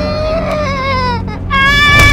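A young girl crying aloud in two drawn-out wails. The first sags slightly in pitch; the second is higher and starts about one and a half seconds in.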